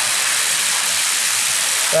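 Water pouring from a round concrete storm-drain pipe and splashing into a flooded chamber, a steady rushing spill.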